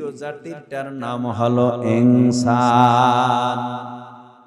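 A man's voice intoning a sermon in a melodic, chanted delivery. It ends on a long held note with a wavering pitch that fades away near the end.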